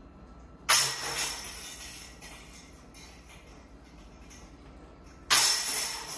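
Disc golf basket chains hit twice by thrown putters, about a second in and again near the end: each a sudden metallic clash of jangling chains that rattles and dies away over a second or so. Both putts are caught in the chains and made.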